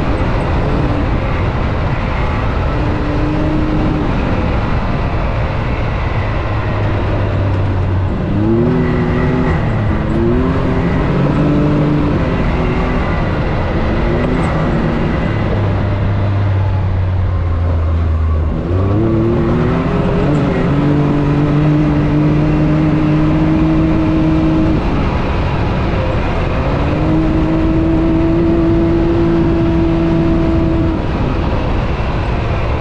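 Can-Am Maverick X3 UTV engine driving a trail, its pitch rising and falling with the throttle. A run of short revs comes about eight to thirteen seconds in, then a low steady stretch, then it climbs back to a steadier, higher pull.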